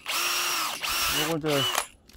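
DeWalt cordless drill with an 8 mm bit boring a shallow tap hole into a maple trunk for sap. The motor runs twice, each time winding up quickly to a steady whine. The first run lasts almost a second, the second about half a second.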